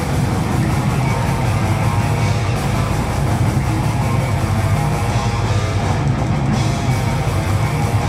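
Death metal band playing live: distorted electric guitars, bass guitar and drum kit in a loud, dense, unbroken stream.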